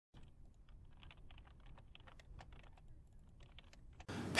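Faint, rapid, irregular clicking, several clicks a second, much like keys being typed.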